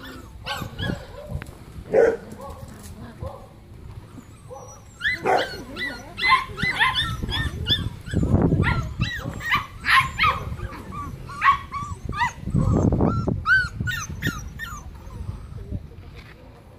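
Dogs barking a few times in the first seconds, then Bearded Collie puppies yelping and whining in many short, high calls. Two stretches of low rumbling noise come in the middle and near the end.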